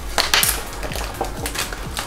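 Crinkly plastic wrapper packets rustling and crackling in irregular bursts as they are pulled out of plastic cups and handled, with background music underneath.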